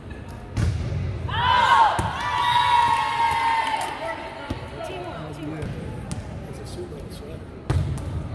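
Sharp hits of a volleyball, about half a second and two seconds in, and a team of girls' high voices shouting and cheering together for a couple of seconds after winning the point. Another sharp ball hit comes near the end.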